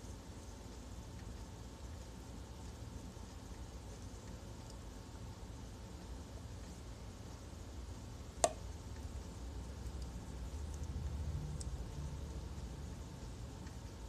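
Thick green smoothie being poured from a blender jar into a glass bottle: faint low sounds throughout, a little stronger after about ten seconds, with one sharp clink a little past halfway.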